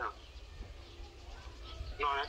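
Quiet stretch with a faint bird call: one short, steady low note about halfway through.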